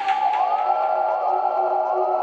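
Electronic music without drums: sustained synthesizer drones under a repeating synth tone that slides up in pitch and then holds, each new slide starting about every half second and overlapping the last.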